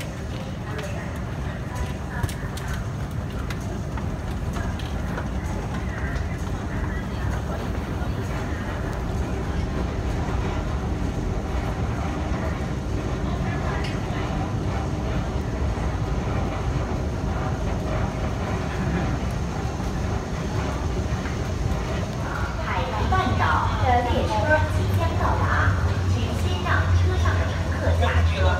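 Underground metro station ambience: a steady low rumble with people talking and moving around. About 23 seconds in, a deeper, louder hum comes in along with busier chatter at the platform.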